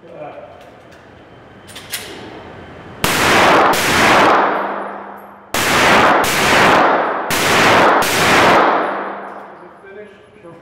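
Six handgun shots fired as three quick pairs, the two shots of each pair about half a second apart and the pairs about two seconds apart. Each pair rings out in a long echoing decay off the walls of the indoor range.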